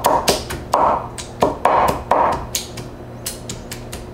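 A kitchen knife chopping shucked Manila clam meat on a wooden cutting board: a quick, uneven run of knocks, about three or four a second, as the clams are minced finely.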